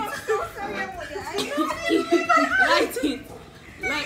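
Several women's voices talking over one another and laughing, with a lull about three seconds in.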